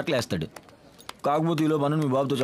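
A man's voice: the tail of a word, a short pause, then a long drawn-out vocal sound held at a fairly steady low pitch from a little past halfway.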